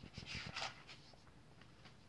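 Faint rustling of paper pages being turned, a few short rustles and soft clicks in the first half-second or so.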